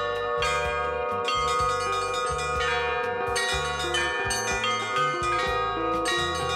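Russian Orthodox belfry bells of many sizes rung together by hand in a rhythmic peal: a deep bell sounds about once a second beneath a quick, busy pattern of smaller, higher bells, each strike ringing on.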